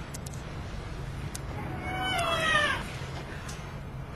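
A cat meowing: one drawn-out call, falling in pitch, about two seconds in, over a low steady hum.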